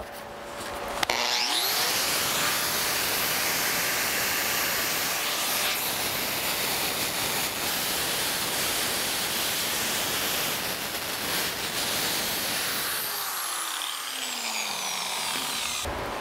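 Angle grinder with a twisted-knot wire wheel switched on about a second in and spinning up with a rising whine, then scrubbing paint and grime off a cast iron vise body in a steady harsh rasp. Near the end it is switched off and winds down with a falling whine.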